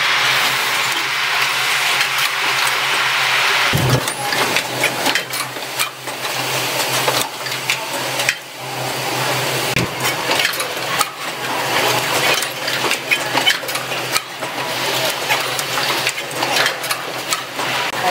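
Automatic micro switch assembly machine running: a steady hiss for about the first four seconds, then a dense, irregular run of mechanical clicks and clacks from its moving stations, over a steady low hum.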